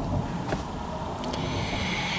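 Steady low rumble of background noise inside a car's cabin, with a faint click about half a second in and a soft hiss over the last second.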